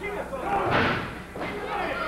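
Pro wrestlers' bodies thudding against the ring ropes and corner, with crowd voices shouting about half a second to a second in.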